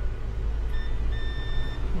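A digital multimeter's continuity buzzer beeps twice, first short and then longer, about a second in, as the probes touch a low-resistance point on a laptop motherboard. A steady low hum runs underneath.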